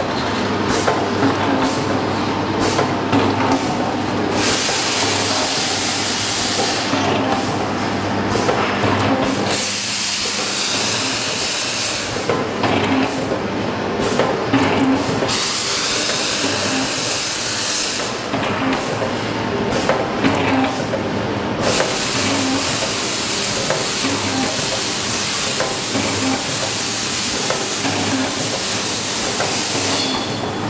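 Automatic sachet packaging machines running: a steady mechanical clatter with a repeating beat about once a second as each cycle runs. Long stretches of loud hiss come and go over it.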